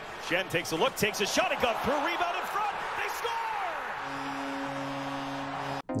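Ice hockey broadcast sound: arena crowd noise with a voice and sharp knocks of sticks and puck, then about four seconds in a steady held musical tone comes in, with a brief dropout just before the end.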